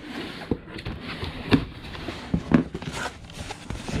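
Scissors cutting the packing tape on a cardboard shipping box, then the cardboard flaps being pulled open, with rustling and three sharp knocks about a second apart.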